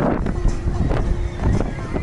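Low rumble of wind on the microphone, with music and people's voices in the background; a steady musical note is held for about a second in the middle.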